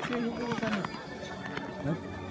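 Voices of other people in the background, talking and calling out, with no single clear speaker.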